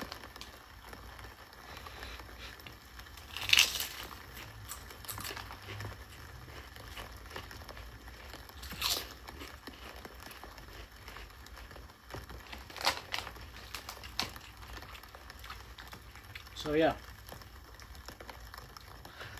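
Large potato chips being bitten and chewed, with the plastic chip bag crinkling, in a few short, sharp crunches several seconds apart.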